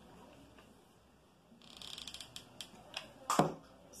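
Handling noises of a painted tin can and a thick cotton cord being pressed onto it with hot glue. A short scratchy rasp comes about halfway through, then a few light clicks and one sharper knock near the end.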